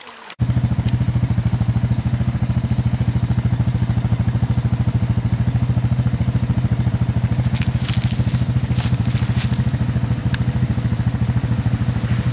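A trickling stream cuts off abruptly a fraction of a second in, and an ATV engine takes over, running steadily with a fast, even pulse. A few sharp clicks and crackles come about eight to nine seconds in.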